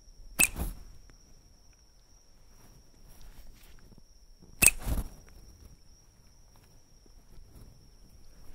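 Two sharp snaps from a rubber-band slingshot launching a light-up Rocket Copter toy, one about half a second in and a louder one about four and a half seconds in. A steady high insect chirring runs underneath.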